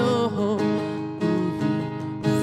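Strummed acoustic guitar accompanying a man singing, his voice bending up and down in pitch over the steady chords.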